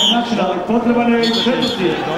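A man talking in sports commentary, with the tail of a short, high referee's whistle blast at the very start.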